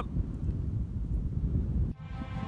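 Wind buffeting the microphone, a low, rough rumble with no clear pitch, cutting off abruptly near the end.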